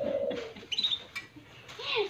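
Hill myna calling: a throaty note at the start, a short high chirp about three-quarters of a second in, and a note that sweeps up and down in pitch near the end.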